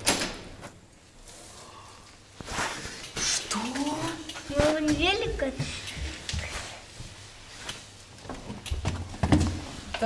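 A door opens with a sharp knock, then voices give excited, wordless exclamations that rise and fall in pitch, with scattered knocks and clatter as a bicycle is wheeled into a small hallway.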